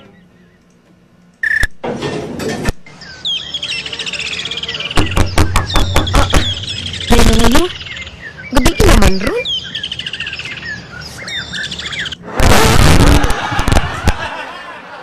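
Small birds chirping: many quick, high, falling chirps repeated over several seconds, with louder sounds breaking in now and then and a loud stretch near the end.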